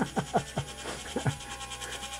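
A man laughing: a run of short pulses, each falling in pitch, that dies away about a second and a half in.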